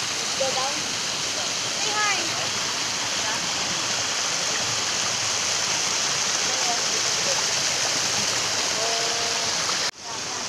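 Small waterfall cascading over rocks into a pool: a steady rush of falling water.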